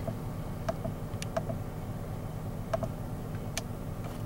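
Steady low hum of a 2008 Mercedes C300's engine idling, heard inside the cabin, with a few faint clicks scattered through it.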